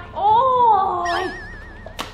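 A woman's long, drawn-out cry of "โอ้ย" (ouch) that rises and falls, followed about a second in by a thin, evenly wobbling whistle-like tone, an edited-in comedy sound effect.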